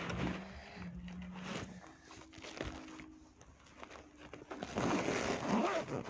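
Fabric rustling and scraping as a badge pin is pushed onto a fabric pencil case, growing louder near the end, with a faint steady low hum in the first half.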